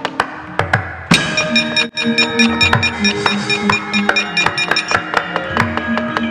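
Javanese gamelan ensemble accompanying a wayang kulit performance: sharp knocks of the dalang's cempala and keprak on the puppet box, then about a second in the full ensemble strikes in loudly with ringing metallophone and gong-chime notes in a steady pulse, the knocking continuing over it.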